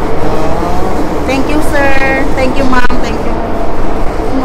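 Subway train carriage running, a steady low rumble throughout, with people's voices talking over it a few times.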